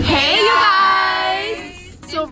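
Young women letting out a long, high-pitched, held cheer that rises at the start, holds steady and fades after about a second and a half.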